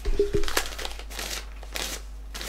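A brief low murmur of voice, then several short rustling noises, like something being handled.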